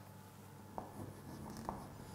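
Chalk faintly scraping on a blackboard as digits are written, with two light taps about a second apart.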